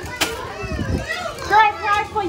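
Excited children's and adults' voices calling out and cheering, with one sharp knock about a quarter second in.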